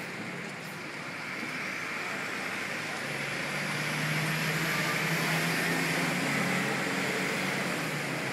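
Steady road traffic noise with car engines. It swells from about four seconds in as a vehicle passes, with a low engine hum.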